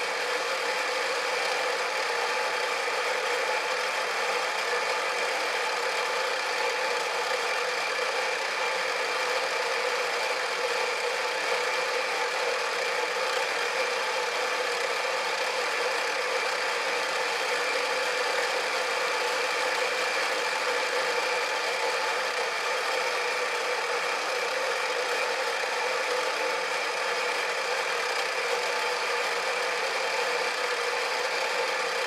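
Power-driven rotary cutter on a workshop machine running steadily while it cuts a tone-hole recess into a bassoon's wooden body, an even mechanical hum with several fixed tones and no breaks.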